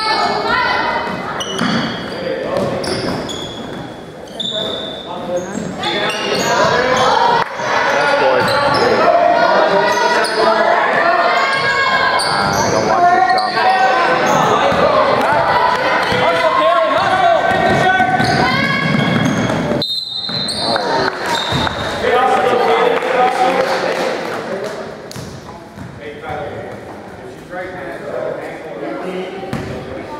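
A basketball being dribbled and bouncing on a hardwood gym floor, with short high sneaker squeaks, in a large echoing gym. Many voices of players and spectators call out over it, loudest through the middle.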